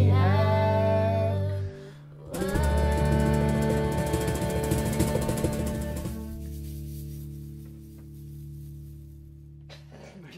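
A band of fiddle, electric guitars and bass with voices ends a song: the sung line and held chord cut off about two seconds in, then after a short break a final chord rings out and slowly fades away.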